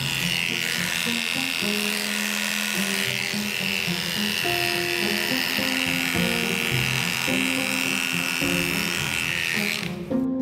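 Electric dog-grooming clippers running steadily as they shave through a matted coat, a high buzzing whine that cuts off near the end. Background music plays underneath.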